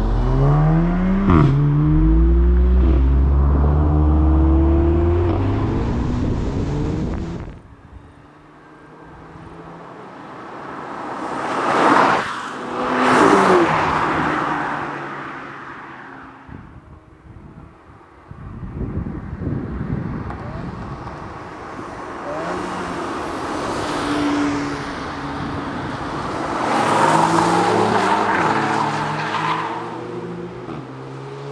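Performance cars driven hard, an Audi S3 among them. First an engine revs up through the gears with quick shifts. After a sudden cut, cars rush past at speed several times, each pass swelling and fading away.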